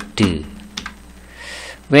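A few separate computer keystrokes, single clicks spaced out, as letters are typed onto a word.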